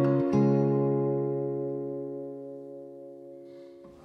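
Steel-string acoustic guitar's closing chord, strummed once just after the start and left to ring, fading slowly before the strings are damped shortly before the end. It is the last chord of the song.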